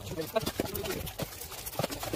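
Workers' voices on a bricklaying site, with a few short sharp knocks of trowel and bricks working cement mortar on the wall.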